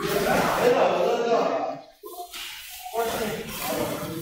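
People talking, in two stretches with a short break about halfway through.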